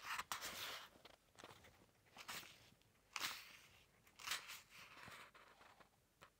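Faint rustling of paperback pages being handled and leafed through: a handful of short, soft rustles about a second apart.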